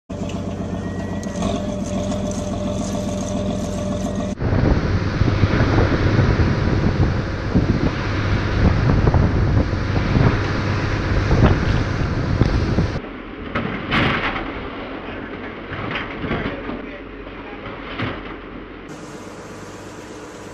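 Fish tug engine running on open water, mixed with wind and water noise. A steady hum for the first few seconds gives way abruptly to a louder, rougher rumble, which drops to a quieter wash with a few knocks about two-thirds of the way in.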